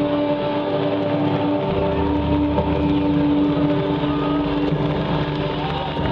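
Loud live band sound ringing out as a sustained drone of held notes, heard through the camera mic in the crowd. A deep bass note comes in just under two seconds in.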